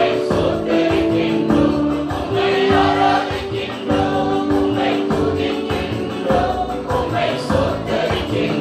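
Mixed choir of men and women singing a Tamil gospel song, holding long notes.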